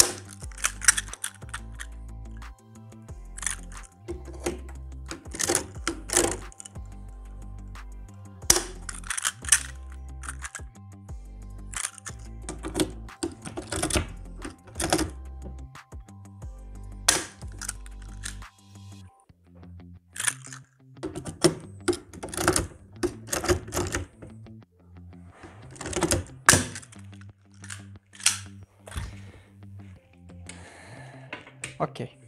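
Background music with a low bass line that drops out about two-thirds of the way through, over repeated sharp clicks from a hand pop-rivet tool setting rivets in an aluminium door hinge.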